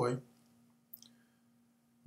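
The last word of a man's sentence fades out, followed by a near-silent pause with a faint steady hum. About a second in there is one short, sharp click.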